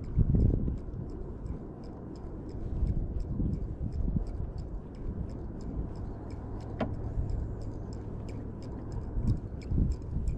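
Fishing reel being cranked while a topwater lure is worked, giving an even run of light ticks about three a second over a low rumble. A single sharp click comes a little before the end.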